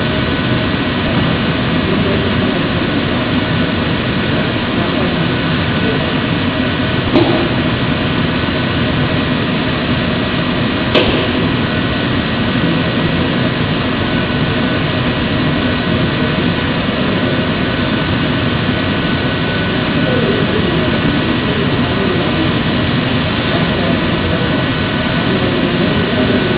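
Steady machine drone and hiss from running workshop machinery, with two faint high tones held throughout. A few light clicks come about 7 and 11 seconds in.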